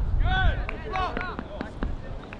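Raised, exclaiming voices, with a few short sharp knocks between them.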